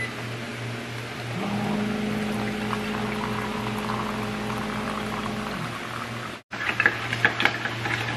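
Electric hot-water dispenser's pump humming steadily while a stream of hot water runs into a glass, starting about a second and a half in and stopping near six seconds.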